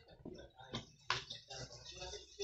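Faint clicks and knocks of a serving ladle against a cooking pot and a ceramic plate while stew is served, the sharpest about a second in.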